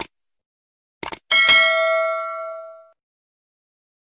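Subscribe-button animation sound effect: a couple of quick clicks about a second in, then a single bell ding that rings out and fades away over about a second and a half.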